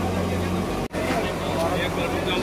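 Diesel engine of a backhoe loader running steadily with a low hum, under the voices of onlookers. The sound drops out abruptly for an instant about a second in.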